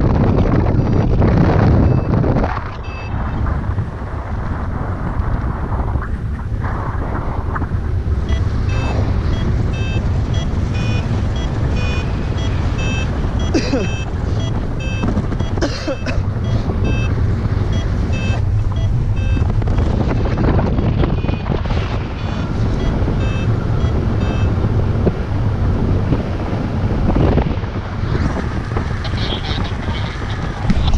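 Rushing wind buffeting the microphone in flight, under a paraglider variometer's quick repeated beeps. The beeps run from a few seconds in until near the end, the sound a vario makes while the glider is climbing in lift.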